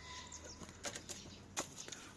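Long-eared owl beating its wings in a few quick, rustling flaps, about a second in and again near the end. The bird has only one wing and flies poorly.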